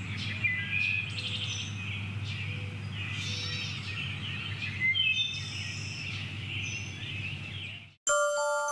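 Small birds chirping and singing, many short high calls overlapping, over a steady low hum; it all cuts off abruptly just before the end.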